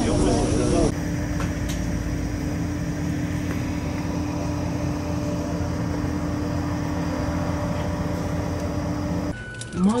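Steady drone of an ATR 72-600 turboprop on the apron: an even rushing noise with a constant low hum running unchanged for several seconds. A voice is heard briefly at the very start, and a cabin announcement begins at the end.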